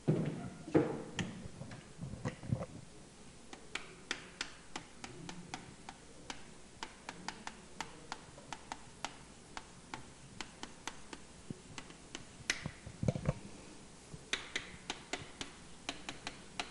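Faint, irregular run of sharp ticks and taps from chalk striking a blackboard while words are written on it, a few clicks a second. A duller, deeper knock comes about 13 seconds in.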